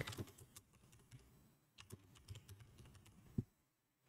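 Faint computer keyboard typing: scattered quiet keystrokes, with one sharper click a little before the end.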